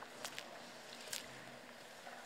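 Quiet ambience of a large legislative chamber with a few faint clicks and rustles, one just after the start, another just after that and one about a second in.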